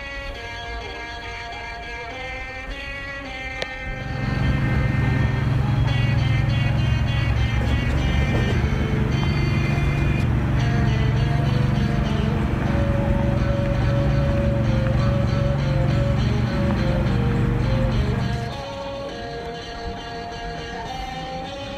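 A car engine running steadily with a low, even hum, louder than the guitar background music, starting about four seconds in and stopping shortly before the end; guitar music plays throughout.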